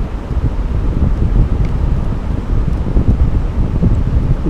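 Steady low rumbling background noise, with most of its energy in the deep bass, like wind or rumble on the microphone.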